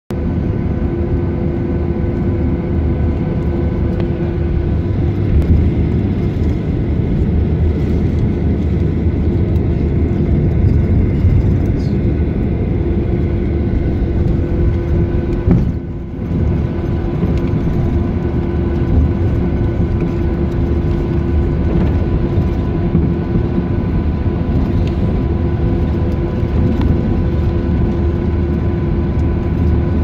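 Cabin noise of a jet airliner taxiing: a steady low rumble with a steady whine from its wing-mounted turbofan engines, dipping briefly about halfway through.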